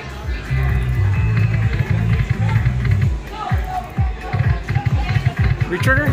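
Ainsworth Ming Warrior slot machine playing its free-games music, a low stepping bass line. In the second half, short knocks come as the reels spin and land.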